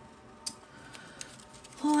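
Quiet handling of a small oracle-card guidebook: a sharp faint click about half a second in and a smaller one just past a second.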